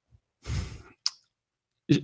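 A man's sigh, a breath out about half a second long into a close microphone, followed by a short mouth click just before he starts to speak.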